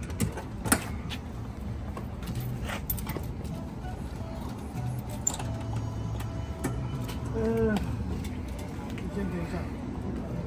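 Metal latches on a camper trailer's front lid being undone, with one sharp click about a second in, then scattered knocks and rattles as the hinged lid is lifted open. A low steady hum runs underneath.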